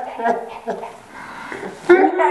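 A woman laughing hard in repeated bursts, trailing off into a quieter breathy stretch in the second half, with loud laughter breaking out again near the end.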